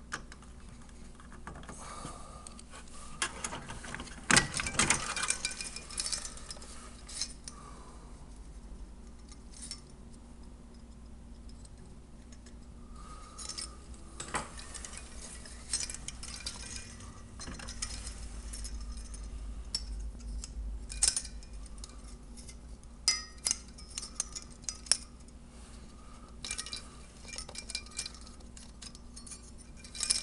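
A desktop PC's CPU cooler being unclipped and lifted off the motherboard by hand: irregular clicks, knocks and clinks of its plastic fasteners, duct and metal heatsink.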